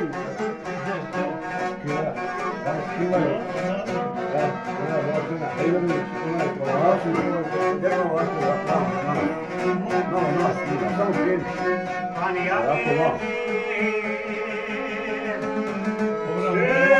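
Two violins and a long-necked plucked lute playing a folk tune together; in the last couple of seconds the playing settles into a few held notes.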